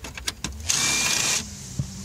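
Cordless drill-driver run briefly for about three quarters of a second, a high whirring hiss with a thin steady whine, after a few short clicks from handling the tool.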